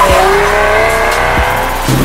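BMW M340i's B58 turbocharged straight-six, fitted with a Fi Exhaust valvetronic cat-back, pulling hard under acceleration. The engine note dips right at the start at an upshift and climbs steadily, then drops sharply near the end at the next upshift and starts rising again. Background music plays underneath.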